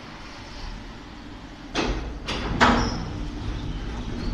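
Ceccato Antares rollover car wash running, heard from inside the car: a low steady hum, then about two seconds in three swishes of the red-and-white side brushes sweeping against the car, the third the loudest.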